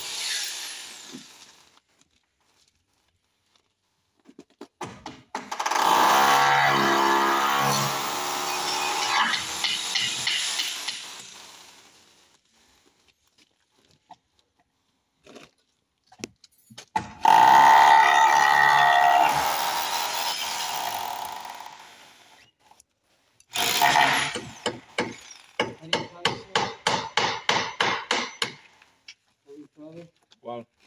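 Power drill running in two long bursts of several seconds each, its pitch wavering as it bores into the wooden window frame. Near the end comes a quick series of hammer blows, about three to four a second.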